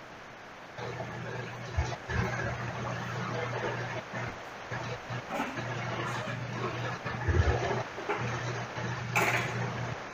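Room noise from a home recording: a steady low hum, with a few soft knocks and a short rustle or scrape near the end.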